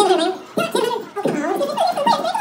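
An auctioneer's rapid, rolling bid-calling chant through a PA system in a large hall, one male voice running on without pauses.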